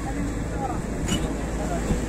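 Indistinct voices of a group of people talking among themselves, over a steady low rumble.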